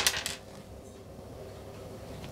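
A few light metallic clicks of small screws and nuts knocking against a 3D-printed part and sheet metal as they are handled, right at the start.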